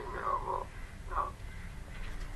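A short laugh in two brief bursts, heard over a video-call connection.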